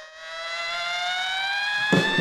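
A single long held note from the band's frontman at the microphone, sliding slowly upward in pitch like a siren while the drums and guitars drop out.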